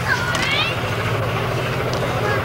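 A steady low hum, with brief voices calling out in the distance over it.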